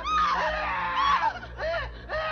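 A high-pitched voice screaming in several shrill cries one after another, over a steady low hum.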